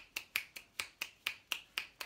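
Finger snapping with both hands, a steady run of sharp snaps about four to five a second, imitating light rain falling in a body-percussion rainstorm.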